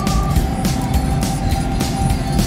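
Music with a steady beat and long held notes, over the low rumble of a car driving along a road.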